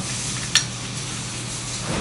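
Sherline lathe lead screw support being pushed back into the aluminium lathe bed by hand, with one sharp metallic click about half a second in and a low steady rubbing noise otherwise.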